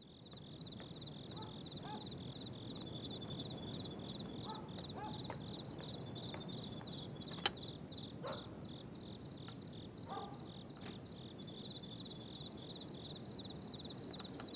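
Night insects chirping: a steady, fast-pulsing high trill with a second, higher chirp that comes and goes every second or so, over a faint low hum. A single sharp click sounds about halfway through.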